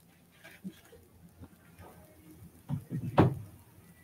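Quiet room tone with a brief low sound and one sharp knock about three seconds in.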